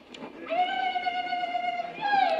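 A woman's long, high-pitched cry of joy, one held note starting about half a second in and sustained to the end.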